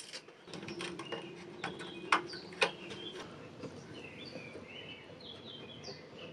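A few light clicks and taps of small plastic drawer child-lock parts being handled and fitted, mostly in the first half. Faint bird chirps come through in the second half.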